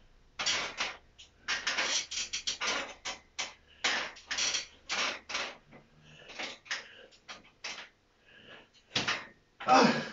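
A man breathing hard in quick, irregular gasps and puffs while straining through chin-ups, with a louder, deeper exhale near the end.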